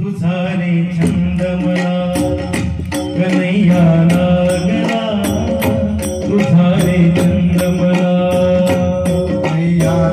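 Marathi gavlan devotional song: a male voice chanting a melody over a held steady note, with a hand drum and small hand cymbals striking a steady beat. The music comes in abruptly at the start.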